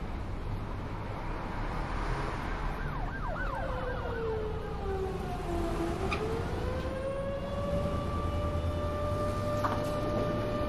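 A siren wailing over a low steady rumble: a few quick warbles, then a long slow fall in pitch and a rise to a held tone.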